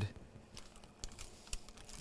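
A few faint, sparse taps and light paper rustling as a baked pie is lifted out of its metal pan by its parchment lining and set down on a board.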